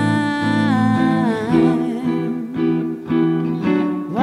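A woman's voice holds one long sung note into a close microphone over a picked archtop guitar. The note ends about a second and a half in, leaving the guitar's plucked single notes, and a new sung note slides in at the very end.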